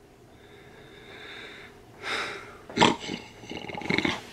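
A man's mock snoring: a long, faint drawn-in breath, then a few louder snores in the second half, the sharpest about three seconds in.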